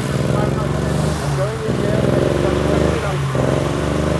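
A BMW 325iS straight-six engine running steadily at idle as it is prepped for spinning. Voices are heard over it.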